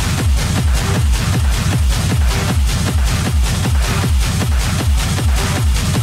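Hard techno (schranz) DJ mix: a fast, steady, pounding kick drum under dense, bright percussion, with no break or change in the groove.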